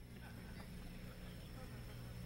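Faint steady hum with low room noise in a pause between spoken phrases.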